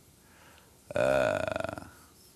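A man's drawn-out hesitation sound, a held 'eh', lasting about a second from just before the middle, with the voice breaking into a creak as it trails off.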